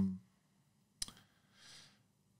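A single sharp click about a second in, followed shortly by a faint, short breath-like hiss, in a small quiet room.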